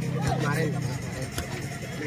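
A vehicle engine running steadily for about the first second, under people's voices, with two sharp smacks of boxing gloves landing a little over a second apart.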